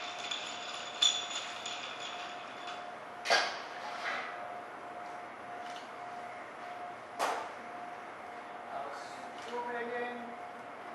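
Knocks and clinks of bar glassware and tools while a cocktail is mixed: three sharp ones, about a second in, just after three seconds and just after seven seconds, with fainter ones between, over a faint steady tone.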